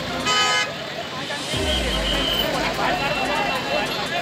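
A short vehicle horn toot about a third of a second in, over a crowd talking, followed about a second later by a low rumble.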